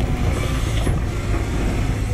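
CAT 320GC excavator's four-cylinder diesel engine running steadily under load as its hydraulics drive the bucket through soil, with scattered short knocks and clatter of the bucket and tracks.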